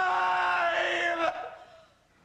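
A man's long, held shout on one steady pitch, cut off sharply a little over a second in, with a brief echo.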